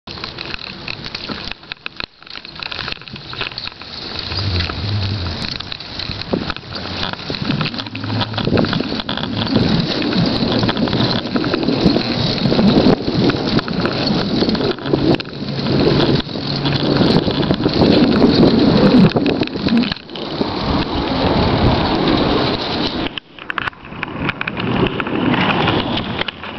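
Wind buffeting a camera microphone carried along at cycling speed, a loud, rough rushing that surges and fades and drops away briefly a few times.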